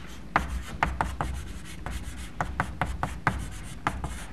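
Chalk writing on a blackboard: an irregular run of sharp taps and short scratchy strokes.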